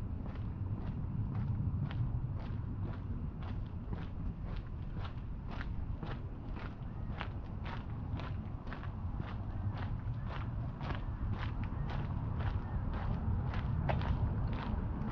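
Footsteps of a person walking at a steady pace on a concrete sidewalk, about two steps a second, over a low steady rumble.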